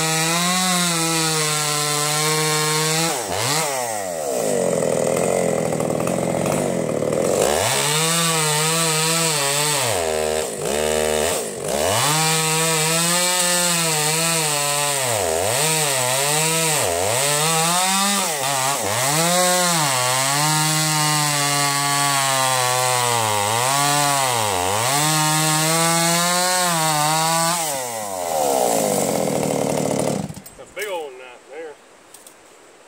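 Husqvarna two-stroke chainsaw bucking logs, its engine pitch sagging under load in each cut and rising again at full throttle as the chain comes free, over and over. About four seconds in it settles lower for a few seconds before cutting resumes. It cuts off at the end.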